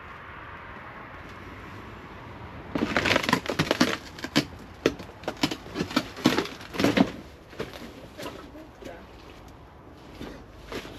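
Footsteps pushing through dense undergrowth and debris, with irregular rustling, crackling and snapping of plants and litter underfoot. It starts about three seconds in and thins out near the end.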